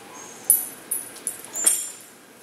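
Dogs making a few short, sharp, high yips; the loudest comes about three-quarters of the way through.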